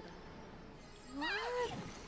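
A short, high-pitched wavering cry about a second in, rising in pitch and wobbling, over a quiet background.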